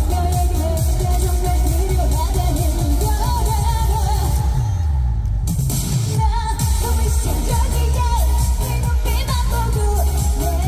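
A woman singing a dance-pop trot medley live into a microphone over a loud backing track with heavy bass, amplified through the stage PA. About halfway through, the high end of the backing drops out for about a second while the bass carries on.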